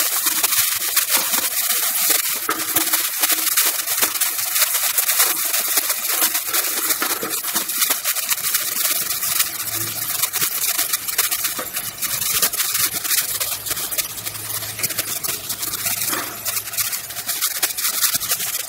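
Chopped carrots, peas and beans sizzling in hot oil in a pressure cooker pan, stirred with a slotted metal ladle: a steady hiss with fine crackles.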